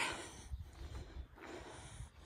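Faint breathing of a person holding the camera, with a low rumble about half a second in.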